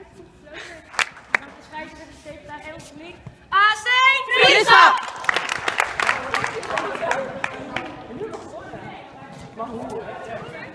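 A group of young women shouting and cheering together, loudest from about three and a half seconds in, over busy chatter. There are two sharp smacks about a second in.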